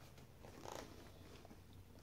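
Near silence: room tone with faint handling noise and one soft, brief rustle a little before the middle.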